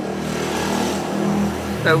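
A motor vehicle's engine running steadily close by, a low drone that swells briefly and then fades.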